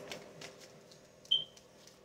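A quiet pause with a few faint light clicks, then a single short high-pitched beep a little past halfway.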